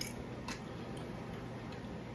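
A fork clicking against a plate, two sharp clicks about half a second apart and a few fainter ones after, over a steady low room hum.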